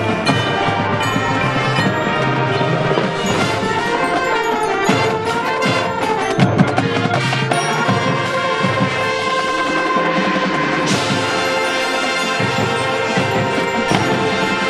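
Marching band playing: brass over a front ensemble of marimbas and timpani, continuous and loud, growing brighter at the top about eleven seconds in.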